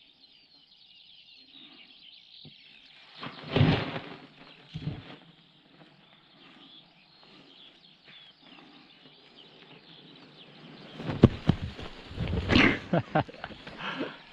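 Small birds chirping steadily in the background. Over them come loud bursts of rustling and wind buffeting on the microphone, about four seconds in and again from about eleven seconds, as the canopy lands nearby. A person laughs near the end.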